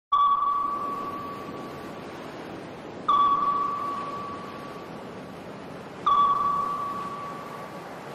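An electronic intro sound effect: three pings about three seconds apart. Each is a clear ringing tone that starts suddenly and slowly fades over a soft steady hiss.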